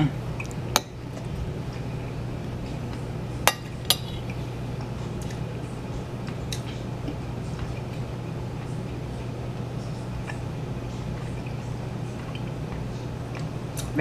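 A metal fork clicking against a plate a few times while eating: a sharp click about a second in, two more close together around three and a half to four seconds in, then fainter taps, over a steady low hum.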